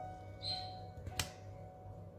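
Soft background music with held notes, plus a brief rustle about half a second in and a single sharp click a little over a second in, from hands handling stickers on a paper planner page.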